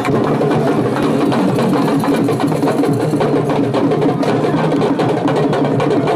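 A drum ensemble playing a fast, dense rhythm of many close-set strokes.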